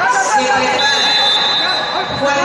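Voices of spectators and coaches shouting and talking around a wrestling bout. From just under a second in, a high steady whistle blast runs over them, typical of a referee's whistle stopping the action.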